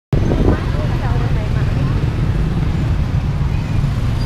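Busy city street traffic, mostly motorbikes and cars, with a heavy low rumble throughout. Voices are heard in the first two seconds.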